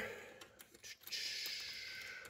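Faint rustle of plastic-sheathed Romex cable being pushed into a metal electrical box, with a light click about a second in.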